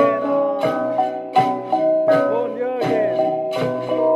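Jrai cồng chiêng gong ensemble: a row of tuned hanging gongs struck in turn by several players, their ringing tones overlapping into an interlocking melody. A stronger stroke comes about every two-thirds of a second, about six times.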